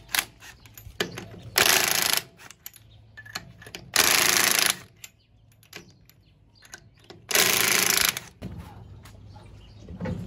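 Cordless impact wrench hammering lug nuts loose on a pickup's wheel, in three short bursts of under a second each, a few seconds apart, with small metallic clicks between them.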